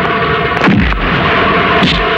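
Dubbed film fight sound effects: about three punch and kick impacts, each a sharp hit with a falling boom, over steady background music.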